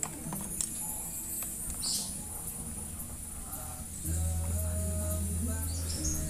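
Faint metallic clicks of a hex key on the bolts of a small aluminium worm gearbox as it is being unbolted for disassembly. A steady low hum joins about four seconds in.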